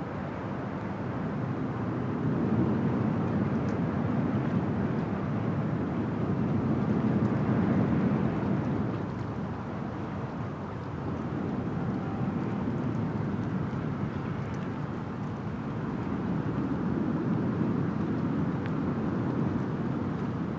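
Wind blowing across an exposed hillside and over the phone's microphone: a rushing noise that gusts up and eases off over several seconds.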